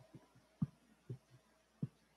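Handling noise from a microphone being adjusted on its stand: a handful of dull thumps and bumps, the loudest a little over half a second in.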